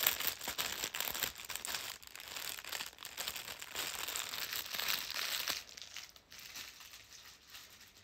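Clear plastic gift packaging crinkling and rustling as it is handled and opened, busiest in the first half and quieter near the end.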